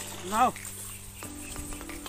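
A single short shouted word in a boy's voice, rising then falling in pitch, over background music that holds a steady note through the second half.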